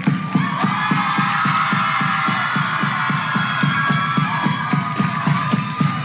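Traditional Somali dance music: a steady beat of about four strokes a second from drum and hand claps, under high, held cries from a group of women's voices.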